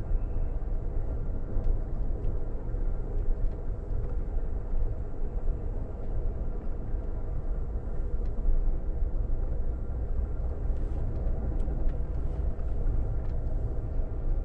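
Steady low rumble of an Amtrak passenger coach rolling along the track, heard from inside the car, with a few faint clicks.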